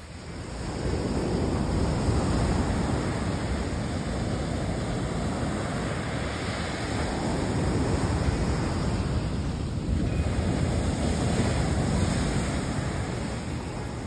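Surf breaking and washing up a sandy beach, with wind buffeting the microphone. The wash swells about a second in and again near the end.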